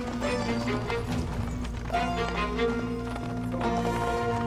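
Background music with sustained tones over the hoofbeats of several horses ridden toward the listener.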